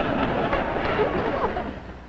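Studio audience laughing as a crowd, the sound dying down near the end.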